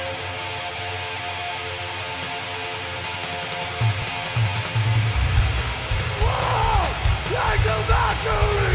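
A heavy metal band playing live on a loud club PA. A distorted electric guitar chord rings on alone, then fast cymbal strokes start about two seconds in. The drums and the full band crash in around five seconds, with high, bending wails over the top from about six seconds.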